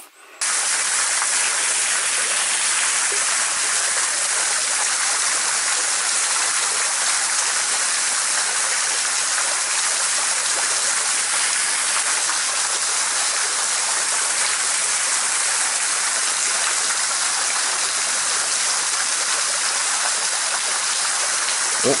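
Small waterfall pouring into a pool: a steady, even rushing of water that starts abruptly near the start and holds level throughout. A man's voice comes in briefly at the very end.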